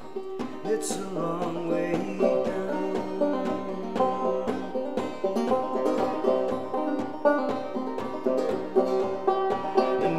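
Acoustic banjo played solo, picking a steady instrumental pattern of plucked notes over a sustained low note.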